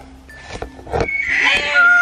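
A horse whinnying: a loud, quavering call that starts about a second in.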